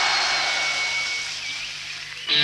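A concert crowd cheering and calling out between songs, the noise slowly dying away, over a steady low hum and a thin high tone from the stage that stops a little over a second in.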